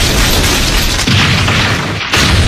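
Animated fight sound effects: a continuous heavy crashing and booming din, with a deeper rumble building about a second in.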